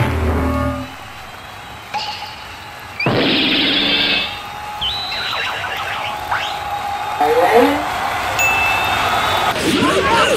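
Cartoon sound effects over background music: a hit with a falling low tone at the very start, then a loud whoosh about three seconds in. Short cartoon vocal sounds come near the end.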